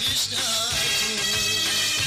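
Instrumental break in a Kurdish pop song: a melody line over a repeating bass line and a steady beat, with no singing.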